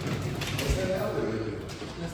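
Indistinct voices talking, with one dull thump under a second in.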